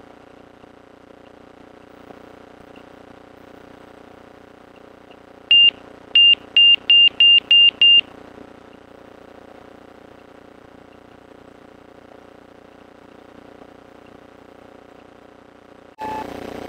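Light aircraft's electronic warning tone, most likely the stall warning as the nose comes up in the flare for touchdown: one short high beep, then six more in quick succession at about four a second, heard through the headset intercom. Under it is the steady low drone of the engine.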